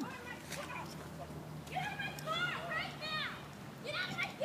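Distant, high-pitched shouting voices in short bursts from about two seconds in, too far off to make out words.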